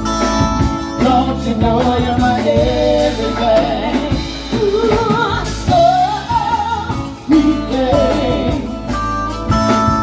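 Live band playing: a woman singing, her voice wavering with vibrato, over electric bass, electric guitar and drum kit, amplified through a PA.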